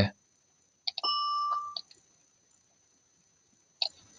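A single high note from BeepBox's "bell synth" instrument, sounded as a note is placed in the piano roll. It rings steadily for just under a second, starting about a second in, and is framed by soft mouse clicks.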